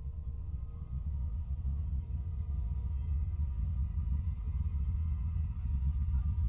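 Low rumbling drone of horror-film sound design, slowly swelling louder, with faint steady high tones above it.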